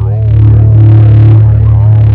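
Ambient electronic music: a loud, steady low drone with wavering tones that glide up and down above it.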